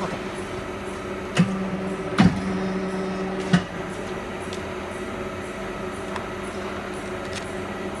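Hydraulic four-column die cutting press running, its pump motor humming steadily. About a second and a half in, a clunk and a louder pump hum start one press stroke. There is a sharp thud a little after two seconds as the cutting die is pressed through the sheet, and another clunk at about three and a half seconds as the stroke ends and the hum drops back.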